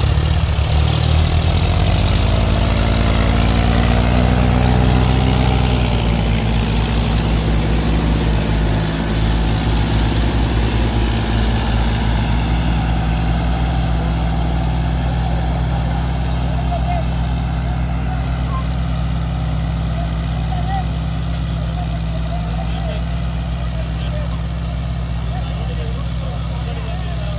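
Two diesel farm tractors, a Mahindra 575 and a John Deere 5042D, running together. Their engines rev up over the first few seconds, then run steadily under load while pulling cultivators through the soil, growing slightly fainter as they move away.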